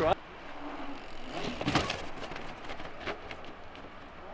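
Enduro mountain bike on concrete stairs: quiet rolling noise broken by a few sharp knocks, the strongest a little under two seconds in.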